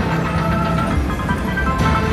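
WMS Vampire's Embrace slot machine playing its bonus-round game music, which changes near the end as a win is awarded.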